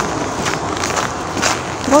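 Wind buffeting the phone's microphone during a walk, a steady rough rumble and hiss, with faint footsteps on snow about every half second.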